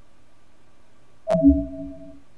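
A Mac computer's alert chime sounding once about a second in, a short two-tone sound that fades quickly, signalling a warning dialog that some clips failed to sync.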